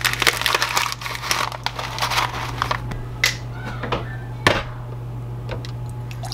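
Paper pouch of instant pudding mix crinkling and crumpling as it is handled and emptied into a stainless steel mixing bowl: dense rustling for about three seconds, then a few scattered clicks and a sharp knock about four and a half seconds in. A steady low hum runs underneath.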